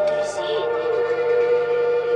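A sustained, droning electronic tone with fainter higher tones above it; the main pitch steps slightly down about half a second in and then holds steady.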